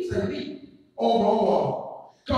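A man's preaching voice through a microphone: two loud, drawn-out phrases with a brief break between them, each trailing off on an exhaled breath.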